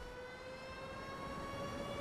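Civil-defence air-raid siren sound effect winding up: one steady tone with overtones, slowly rising in pitch and slowly growing louder.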